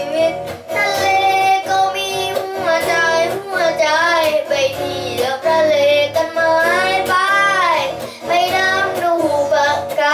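A boy singing a Thai song while strumming chords on an electric guitar, his voice carrying the melody in phrases with some long sliding notes.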